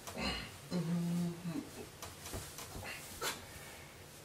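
A person's voice making a low, held 'mm' for under a second, about a second in, with faint rustling around it.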